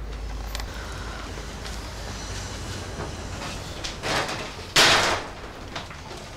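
An interior door being opened: a short rushing scrape about five seconds in, after a softer stir just before it.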